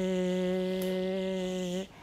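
A woman's voice sustaining the voiced fricative 'zh' [ʒ], a steady buzz on one unchanging pitch with a hiss over it, cut off just before the end. It is held unchanged to show that 'zh' is a continuant that can go on as long as the breath lasts.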